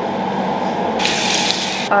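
Water from a bathroom tap splashing into the sink and onto the face and hands during a face wash with a cream cleanser. A louder splash comes about a second in and lasts most of a second.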